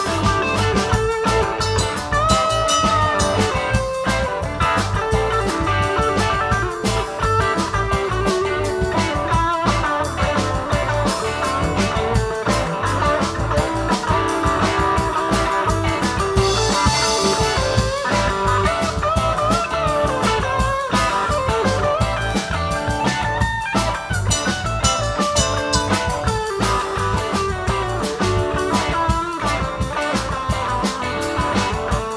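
Live blues-rock band playing an instrumental passage: an electric guitar lead with bent, sliding notes over rhythm guitar, low bass and drum kit. A cymbal swell rises about halfway through.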